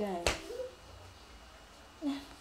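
A single sharp finger snap about a quarter second in, cutting across the end of a woman's speech, with a brief trailing bit of her voice after it.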